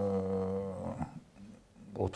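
A man's voice holding one low, drawn-out sound at a steady pitch for about a second, then trailing off.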